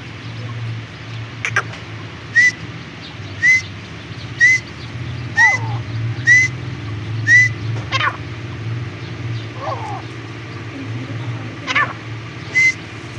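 Young partridges calling: a short, rising whistled note repeated about once a second, six times in a row, with a few other sharper chirps around it. A steady low hum runs underneath.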